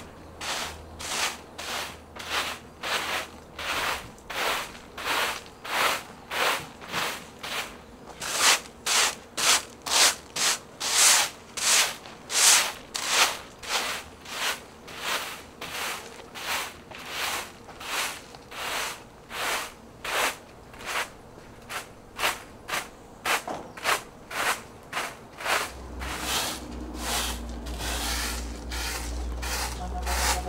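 Broom sweeping, rhythmic swishing strokes at about two a second, loudest in the middle stretch.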